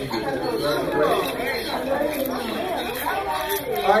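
Overlapping chatter of many children's voices talking at once at their lab tables.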